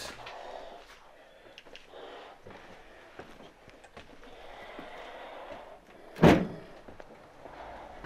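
Faint scuffs and small ticks, then a single loud thud about six seconds in: a door banging as it is pushed open.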